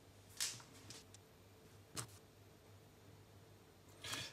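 Near silence: kitchen room tone with a faint low hum and a few soft clicks, the clearest about half a second and two seconds in.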